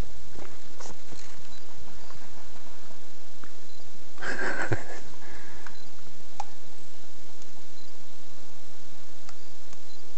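Handheld-camera rustling and scattered light scuffs from a walker on a dirt forest trail, with one brief louder rustle about four seconds in.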